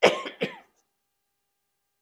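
A woman coughs twice into her hand: two short coughs about half a second apart.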